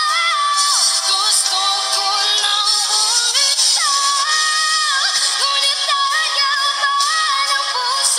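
A woman singing solo into a microphone, holding long notes and sliding between pitches.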